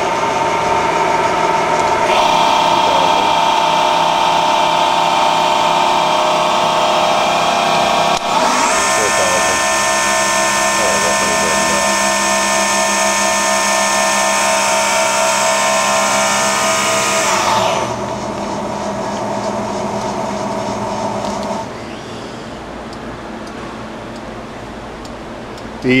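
The spindle of an Amera Seiki MC-1624 CNC vertical machining center runs with a steady whine. Its pitch and loudness step up twice as the speed is raised beyond 1000 rpm, then drop back in two steps later on.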